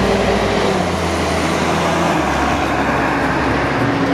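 Steady motor-vehicle noise: an even rushing sound over a low engine hum that shifts pitch about two seconds in.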